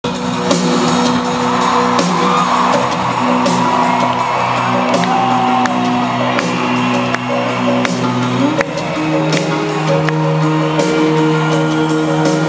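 Rock band playing live in a large hall, electric guitars holding long sustained chords. The chord changes about eight and a half seconds in.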